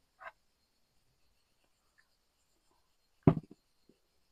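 Mostly quiet, with a faint steady high hiss and one brief, short sound about three seconds in.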